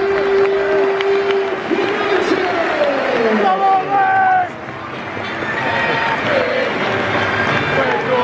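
Football stadium crowd singing and cheering together, voices holding long notes and sliding in pitch over a dense roar; the sound dips about halfway through and swells again.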